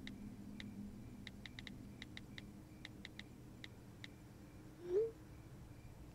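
Smartphone touchscreen keyboard clicks as a text message is typed: light, irregular taps, several a second, over a low steady hum. About five seconds in, a short rising tone.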